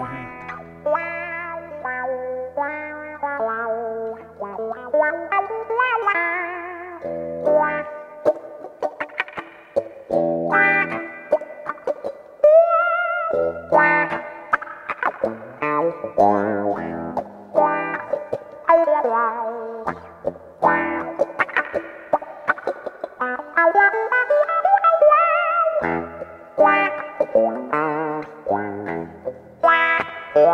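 EVH electric guitar with a natural ash body played through effects, improvising lead lines of quick picked notes. Notes glide upward a few seconds in and again near the end, and one held note around the middle wavers with vibrato.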